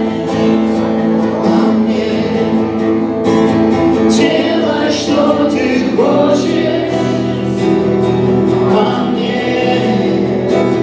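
Worship song: an acoustic guitar strummed as accompaniment while a woman sings the melody into a microphone, heard through the hall's sound system.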